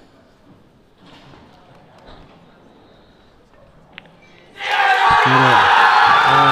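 A hushed pool hall, then one sharp click of the cue striking the cue ball about four seconds in. Half a second later the crowd erupts into loud cheering and shouting as the title-winning ball is potted.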